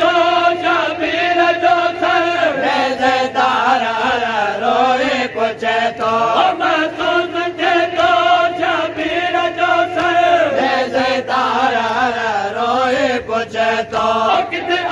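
Men chanting a Sindhi noha, a Muharram mourning lament, in a steady repeated refrain, the lead voice carried on a microphone.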